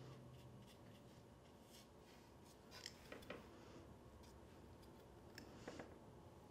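Near silence with a few faint, short scratches of a paintbrush stroking watercolor paper, around three seconds in and again near the end.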